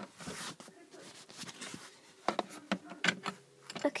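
A few light clicks and taps of a plastic toy pet figure being handled and set down on a plastic playset, spread out between quiet stretches.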